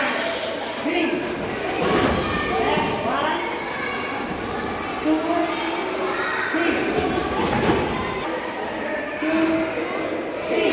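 Indistinct voices in a large echoing hall, with several thuds scattered through, the clearest about two, five and seven seconds in.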